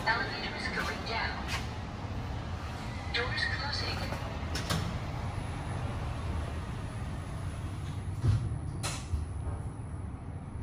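Schindler 5500 machine-room-less lift car over a steady low hum: the doors slide shut, sharp clicks come about halfway and twice near the end, and a faint high steady whine sets in about halfway as the car gets ready to descend.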